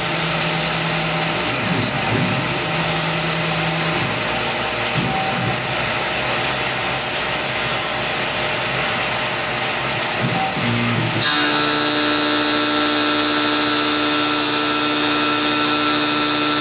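Tormach PCNC 1100 CNC mill cutting 6061 aluminium with a 3/8-inch two-flute carbide end mill under flood coolant, on a finishing pass around the part's profile. The cutting and spindle noise is steady, and about eleven seconds in it changes to a steadier whine of several held tones.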